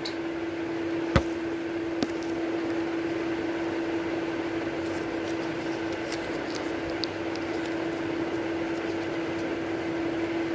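A steady mechanical hum with one constant tone, from an appliance running in the room, with a sharp click just after a second in and a lighter click at about two seconds.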